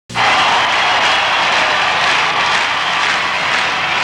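A loud, steady rushing noise that starts abruptly and holds evenly with no pitch to it: a sound effect laid under the show's opening logo.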